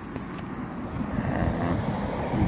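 Low, steady rumbling noise of the recording phone being handled, a finger moving over its lens and body.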